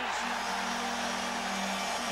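Hockey arena crowd cheering a goal, with the goal horn blaring a steady low two-note tone that starts just after the beginning.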